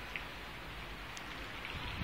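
A steady, even hiss of outdoor background noise with no distinct events.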